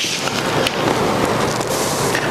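Native seeds poured by hand from a paper plate into a plastic bowl of dry clay and compost: a dense hiss of many tiny grains pattering and sliding.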